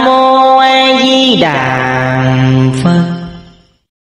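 A voice chanting in long held notes, as in a Buddhist mantra. The note drops lower about a second and a half in, rises a little just before three seconds, then fades out.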